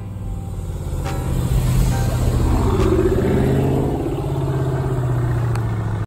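Dodge Charger R/T's 5.7-litre HEMI V8, fitted with a closed-box cold air intake and throttle body spacer, running as the car drives off. It grows louder over the first two seconds or so, then holds steady.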